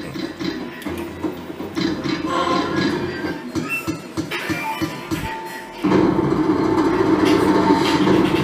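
Slot machine game sounds: electronic music and short tonal blips as the reels spin in the free games, then a louder jingle sets in suddenly about six seconds in.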